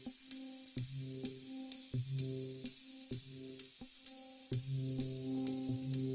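Live improvised electronic music from hardware synthesizers and drum machines: a pitched synth note stabs about once a second over steady, rapid high ticks, then holds on and sustains from a little past halfway.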